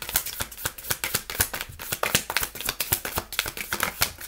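A tarot deck being shuffled by hand: a fast, continuous stream of short, crisp card clicks.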